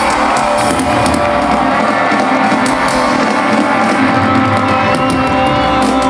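Live country-rock band playing loudly, with electric guitars and drums, at the close of a song.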